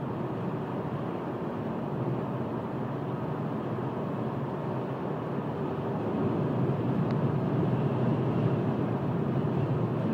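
Steady road and engine noise heard from inside a moving car's cabin at cruising speed, growing a little louder about six seconds in.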